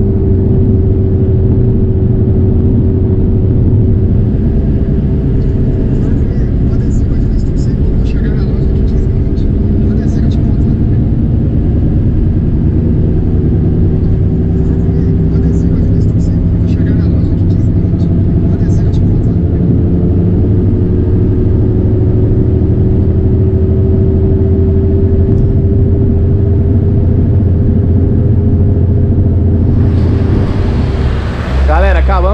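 Inside the cab of a Volkswagen Saveiro pickup cruising on a highway: steady engine and road drone, with a humming tone that wavers slowly in pitch.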